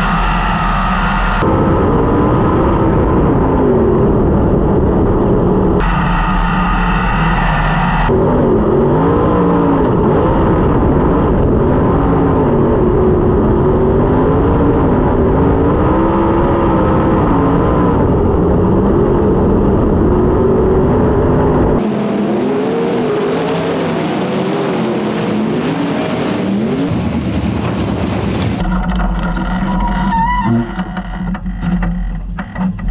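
Onboard sound of a 410 sprint car's V8 engine racing on a dirt track, its pitch rising and falling continuously with the throttle, broken by several abrupt cuts. For the last several seconds the engine note sits under a loud rushing hiss.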